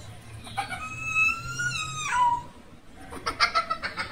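A rooster crows once: a long, steady, high call held for about a second and a half that drops in pitch at its end. Near the end a child laughs briefly in quick bursts.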